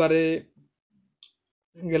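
A single short, faint click just past a second in: the touch-tap sound of a smartphone as the Facebook search button is pressed.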